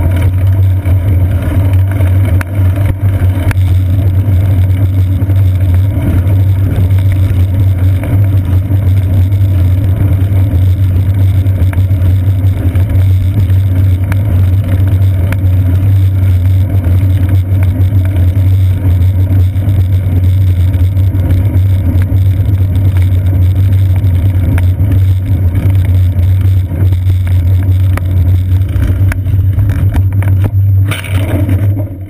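Loud, steady low rumble of wind and road vibration picked up by a seat-post-mounted GoPro Hero 2 on a moving bicycle.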